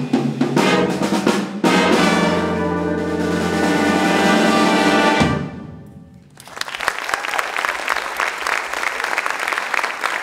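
Jazz band with brass and drum kit playing the end of a tune, finishing on a long held chord that cuts off sharply about five seconds in. After a moment's hush the audience breaks into applause.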